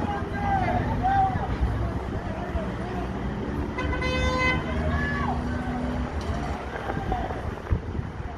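Street scene with a steady low engine rumble and distant voices calling out; a vehicle horn honks once, for just under a second, about four seconds in.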